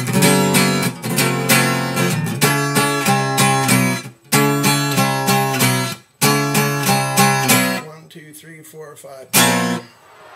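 Acoustic guitar with a capo, strummed in a steady chord rhythm with two brief stops, then a few softer notes and a single loud strummed chord that rings out and fades near the end.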